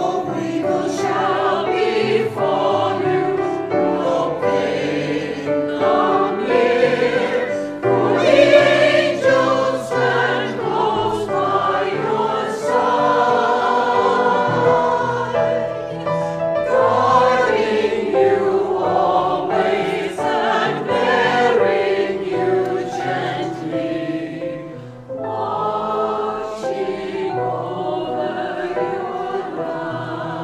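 Church choir singing a hymn, with a brief break between phrases near the end.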